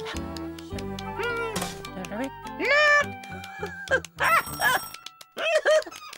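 Cartoon background music with a high, squeaky, wordless character voice giving several short gliding calls over it, the loudest about three seconds in.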